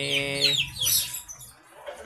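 Chickens clucking in the background: a few short falling calls in the first second, then quieter.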